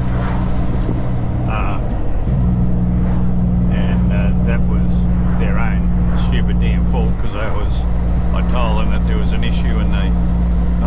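Kenworth truck's diesel engine running under way, heard from inside the cab as a steady low drone; its pitch steps up about two seconds in and dips briefly around seven seconds in.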